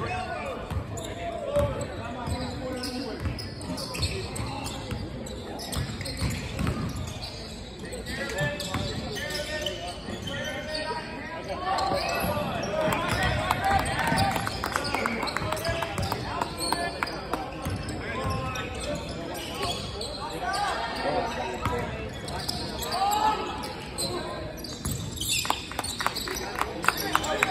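Basketball bouncing on a hardwood gym floor during play, with indistinct voices of players and spectators echoing in a large gymnasium.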